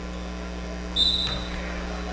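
A single short blast of a referee's whistle about a second in, one steady high note, over a low steady hum of the gym.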